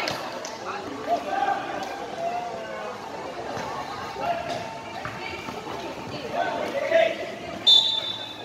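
Players and spectators calling out and chattering during a basketball game, with a few sharp knocks of the ball on the court. Near the end comes a short, shrill referee's whistle.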